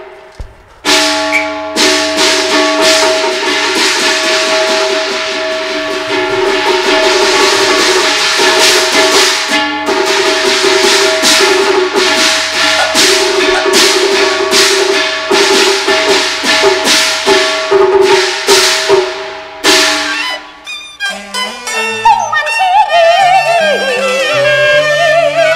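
Cantonese opera accompaniment. A percussion ensemble plays a fast run of repeated strikes over sustained instrumental tones. Shortly before the end the percussion stops and a gliding, bowed-string melody takes over.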